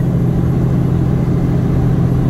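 Loaded semi-truck's diesel engine pulling steadily up a mountain grade, heard from inside the cab as a constant low drone with road noise.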